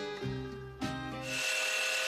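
Background music plays for the first two-thirds. Then a band saw cuts through a bark-edged piece of plum wood: a steady cutting noise with a high, even tone.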